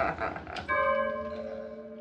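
A bell struck once, ringing with several clear tones that slowly fade.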